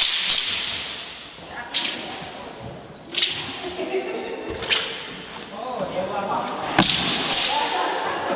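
A series of sharp whip-like cracks, five in all, spaced one to two seconds apart, with faint voices in the background.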